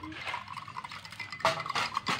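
Tea poured from a stainless-steel kettle into a drinking glass while making sweet iced tea, a faint steady pour with a louder, sharper burst about one and a half seconds in.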